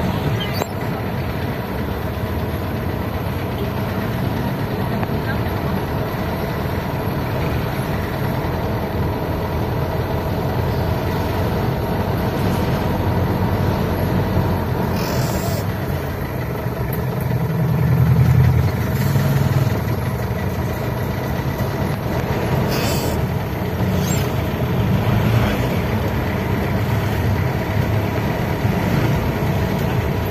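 Inside a minibus driving slowly through street traffic: steady engine and road noise in the cabin, with the engine rumble swelling louder for a couple of seconds past the middle and a few short knocks. Voices murmur in the background.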